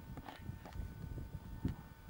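Footsteps through heather and bracken, heard as irregular soft thuds and rustles close to a handheld camcorder's microphone, the heaviest thud near the end.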